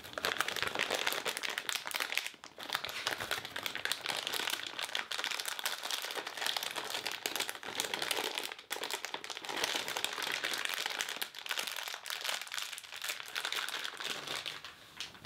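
A clear plastic packaging bag crinkling as hands crumple and press it: a dense, near-continuous crackle, with brief lulls about two and a half and eight and a half seconds in.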